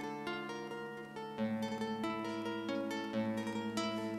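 Nylon-string classical guitar played alone, picked notes ringing over held bass notes. It grows louder with a lower bass note about a second and a half in.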